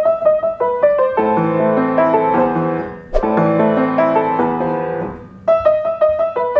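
Piano or keyboard played by hand: a short melody with a bass line below it. The phrase breaks off and starts over about three seconds in, and again near the end.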